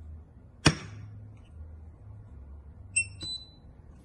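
A single sharp metallic clack from the steel armature plate of an electromagnetic door lock (maglock) being handled against the magnet body, followed about three seconds in by two short electronic beeps.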